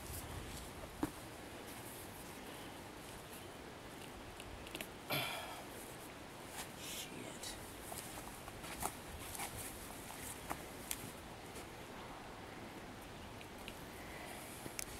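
Footsteps through grass with faint rustling and scattered small handling clicks as a person walks up to a foam deer target and kneels beside it. There is one brief louder sound about five seconds in.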